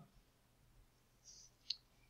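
Near silence with a single computer mouse click about three-quarters of the way through.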